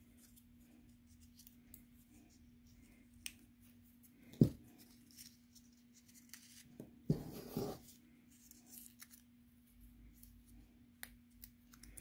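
Small cardstock paper flower being scrunched and crinkled between the fingers: soft scattered rustles, a sharp click about four seconds in, and a louder patch of crinkling around seven seconds in. A faint steady hum sits underneath.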